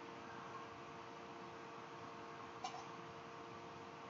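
Quiet room tone with a faint steady hum, and one small click about two and a half seconds in, as small objects are handled on a desk.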